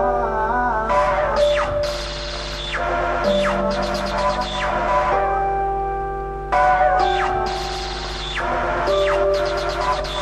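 Instrumental introduction of a song played live: held notes under a wavering melody line, with repeated quick falling sweeps and no singing.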